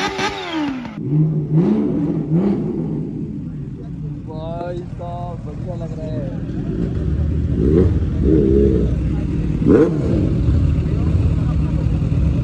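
Kawasaki H2 motorcycle engine blipped in quick repeated revs for about the first second, then a low steady engine idle builds from about seven seconds in under people talking.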